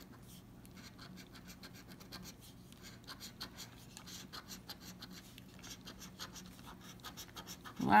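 A coin scraping the coating off a lottery scratch-off ticket in quick, repeated short strokes, a faint dry scratching.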